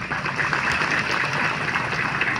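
An audience applauding steadily, a dense patter of many hands clapping at once.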